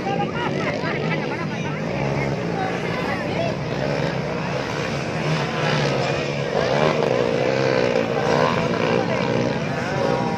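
Several motocross dirt bikes racing around a dirt circuit, their engines overlapping and rising and falling in pitch as riders open and close the throttle, with voices mixed in.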